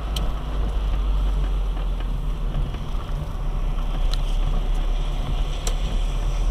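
Inside a car driving on a wet, puddled road: a steady low engine and road rumble with the hiss of tyres on wet asphalt, and a few sharp clicks.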